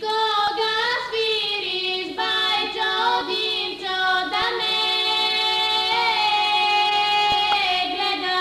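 Two women singing a Bulgarian folk song as a duet, holding long, steady notes, with a short break near the end.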